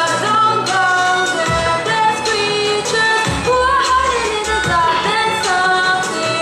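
A girl's voice singing an Indian melody with violin accompaniment, the line sliding between held notes.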